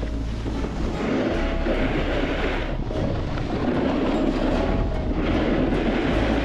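Steady scraping hiss of a board or skis sliding over packed snow, with wind buffeting an action camera's microphone. It grows louder about a second in and swells unevenly.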